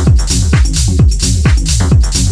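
Techno playing in a DJ mix: a steady four-on-the-floor kick drum about twice a second, with hi-hats between the kicks.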